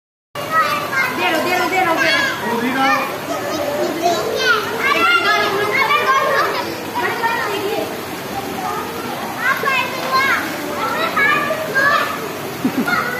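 A group of children shouting and calling out to each other as they play in a swimming pool, several high voices overlapping throughout.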